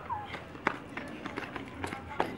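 Children running on concrete, their flip-flops and sandals making a handful of sharp, uneven slaps, the loudest under a second in. A child's high voice trails off at the very start.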